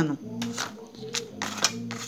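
A clear plastic ruler pressed and rubbed along gift-wrap paper laid over corrugated cardboard, working it into the grooves: about five short paper scrapes and crinkles.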